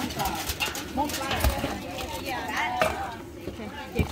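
Wooden spatula and metal skimmer knocking and scraping against a stainless steel bowl as seafood, corn and potatoes are tossed, with several short knocks.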